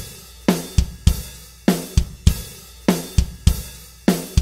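Multitrack acoustic drum kit loop playing back: a rock groove of kick, snare and a loose, open hi-hat, with steady cymbal wash between the hits. The loop is time-stretched from its recorded 86 BPM up to 100 BPM.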